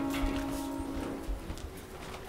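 Footsteps and knocks on a stage floor as a wheeled bed is pushed into place, over music whose held note fades out about a second and a half in.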